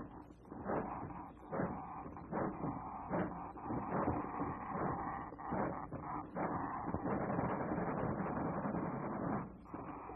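Clattering mechanical sound effects of a cartoon contraption running, on an old, dull-sounding soundtrack with no high end.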